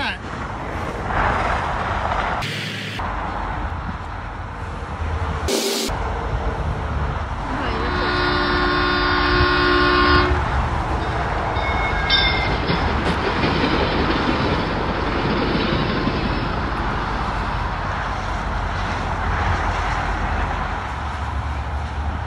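Steady rush of freeway traffic, and about eight seconds in a long horn blast of several tones together, held for about two and a half seconds.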